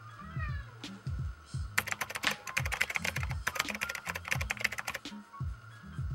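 A cat gives one short meow over background music with a steady bass line. About two seconds in, a rapid run of sharp clicks starts and lasts about three seconds.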